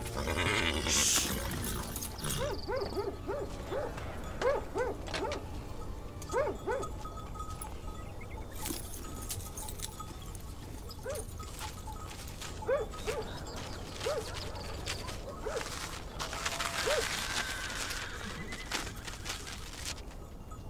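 Dogs barking again and again in short barks, in a quick run for the first several seconds and more scattered after that, with one longer drawn-out call near the end.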